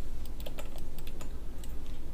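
Computer keyboard typing: an irregular run of sharp key clicks over a steady low hum.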